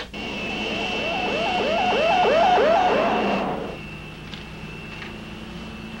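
Electronic sci-fi film sound effect of a futuristic vehicle: a steady high whine with a rising warble repeating about twice a second. It swells for about three seconds, fades out near the four-second mark, and leaves a quieter steady cabin hum.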